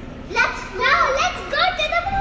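Children's voices, excited speech or calls that start a moment in.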